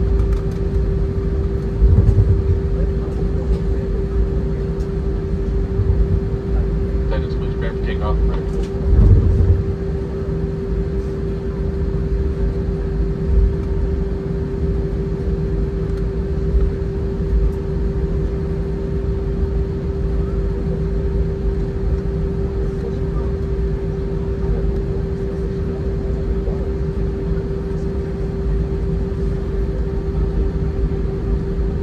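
Airbus A319 cabin noise while taxiing: the engines running at idle with a steady low rumble and a constant hum, and two heavier low bumps, about two and nine seconds in.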